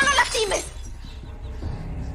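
Glass shattering together with a shrill cry in the first half-second, then a low steady drone.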